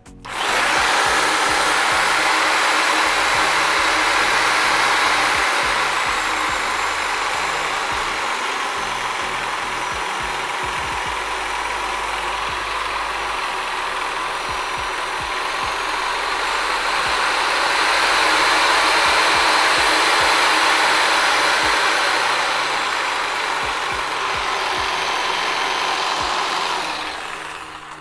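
Corded 100 V, 350 W variable-speed reciprocating saw running with no load, starting abruptly and running down near the end. Its loudness swells over the first few seconds and again about two-thirds of the way through as the speed-control trigger is worked.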